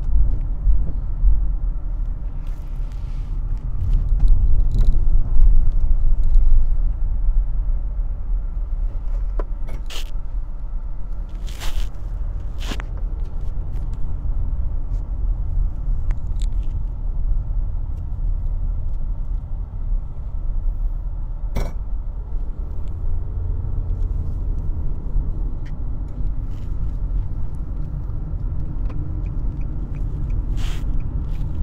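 Steady low rumble of road and engine noise inside a Nissan sedan's cabin while it is driven, swelling louder for a couple of seconds about four seconds in. A few brief, isolated clicks stand out over it.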